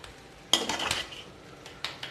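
Slotted metal spoon striking and scraping a large metal wok while stirring fried rice: one sharp ringing clank about half a second in, scraping after it, and a lighter tap near the end.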